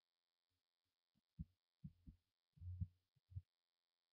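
Near silence broken by five or six faint, short low thuds in the second half, the kind of dull knocks made by handling or distant bumps.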